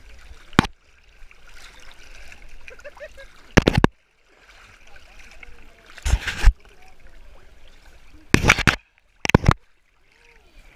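Water splashing and gurgling as a person hauls himself along on his back through water under a wire-mesh cage, with the camera right at the surface. There are five sharp, loud splashes a few seconds apart, with lower sloshing and bubbling between them.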